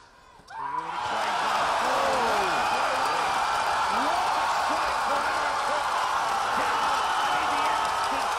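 Large arena crowd suddenly erupting into loud, sustained cheering, with shouts and whoops, about half a second in. It is the reaction to a knockout head kick in a taekwondo bout.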